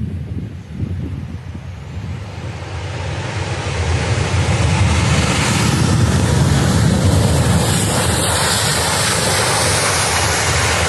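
Boeing 737-800's CFM56 jet engines running at high power as the airliner rolls fast along the runway, the roar building over the first few seconds as it nears and then staying loud. Wind buffets the microphone underneath.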